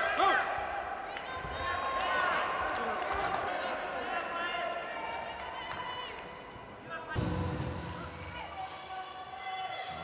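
Judo contest arena sound: shouting voices with no clear words, and thuds of feet and bodies on the tatami mat from about seven seconds in.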